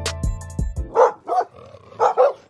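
Outro music with a steady drum beat cuts off just before a second in, followed by a dog barking twice.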